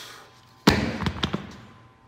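Pair of hex dumbbells dropped onto the gym floor: one loud thud about two-thirds of a second in, followed by a few quick smaller bounces that die away.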